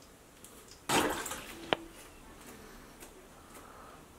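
A short splash of water about a second in, fading over half a second, then a single sharp click with a brief ring.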